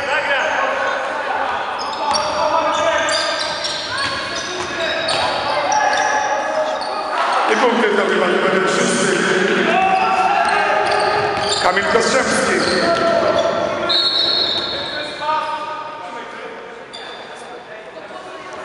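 Basketball being played in a large sports hall: sneakers squeaking on the wooden court, the ball bouncing, and players and onlookers shouting, all echoing in the hall. The shouting grows loudest in the middle and eases off near the end.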